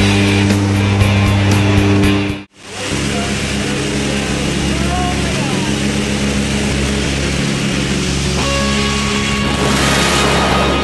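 Jump plane's engines droning steadily in the cabin; after a sudden break about two and a half seconds in, loud wind rush at the open door over the engines as the jumpers exit.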